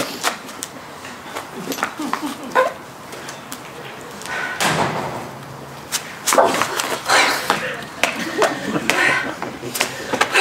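A woman's breathy vocal sounds without words, swelling twice in the second half, with a few light knocks in between.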